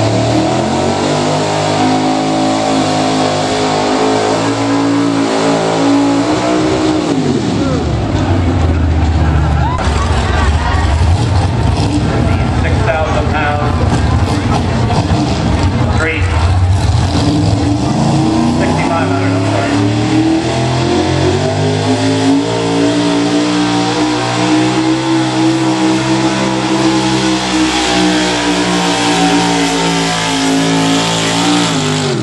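Modified gas pickup truck engine running loud at a truck pull. Its pitch drops sharply about seven seconds in, then comes a deep heavy rumble for about twelve seconds, then it climbs again and holds a higher pitch near the end.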